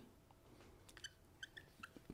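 Faint squeaks of a marker pen writing on a whiteboard, a handful of short squeaks in the second half.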